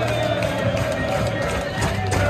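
Music filling a football stadium, mixed with crowd noise from the packed stands; a held note carries through, with a faint quick beat near the end.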